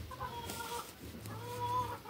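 A chicken clucking in two drawn-out calls, the second, near the end, the louder.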